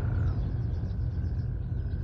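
A deep, steady rumble with faint birds chirping high above it in quick, short downward-sliding calls.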